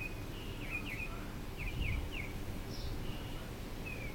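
A small bird chirping repeatedly, short high notes in quick groups of two or three, over a low outdoor background rumble that swells briefly about two seconds in.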